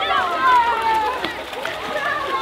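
Children's voices shouting and calling out, high-pitched, with one long call falling in pitch about half a second in.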